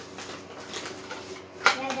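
Hard 3D-printed plastic parts of a toy blaster handled and fitted together, with one sharp click about one and a half seconds in as a piece seats in place.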